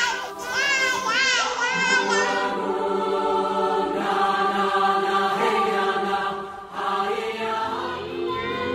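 A young child's high voice rising and falling in repeated sweeps for the first couple of seconds, giving way to choral music with long held chords, which briefly drops away just before the end.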